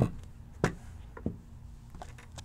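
A plastic digital scale set down on a tabletop with a sharp knock, followed by a second knock about two-thirds of a second later and a few lighter taps as items are shifted on the table and the scale's buttons are reached.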